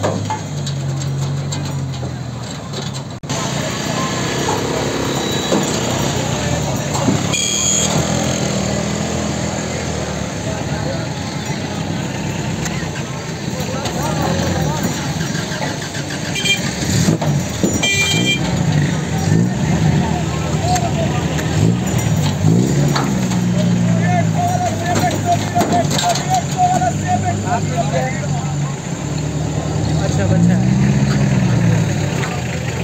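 Men's voices talking over the steady running of a vehicle engine.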